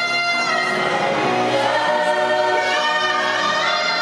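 A gospel worship team singing together in harmony, the voices holding long notes.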